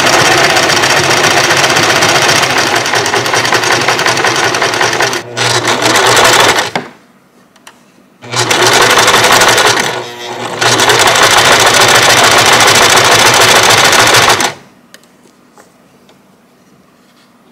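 Electric home sewing machine running a zigzag stitch through fabric, in two long runs of rapid stitching with a pause of about a second and a half midway. It slows briefly in each run and stops a little before the end.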